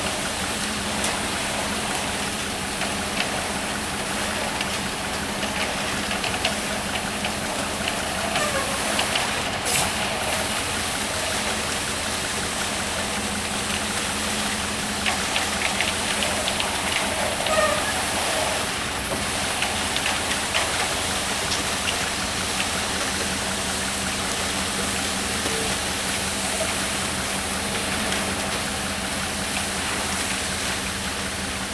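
Concrete mixer truck running steadily with its drum turning while wet concrete slides down the discharge chute with a continuous rushing sound, and scattered short scrapes and clicks of hand tools working the concrete.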